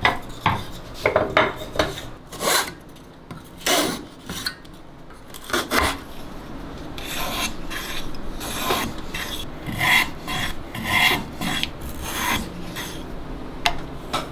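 Wooden blocks and dowels set down on a wooden board with several sharp knocks, then a wooden dowel twisted in a handheld sharpener, its blade shaving the end in a series of short rasping scrapes about once a second.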